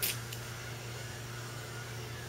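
Room tone: a steady low hum, with a short hiss right at the start and a fainter one just after.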